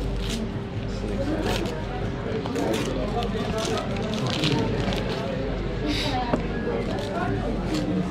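Paper wrapping around a wrap sandwich crinkling and rustling in short bursts as it is peeled back and handled, with voices in the background.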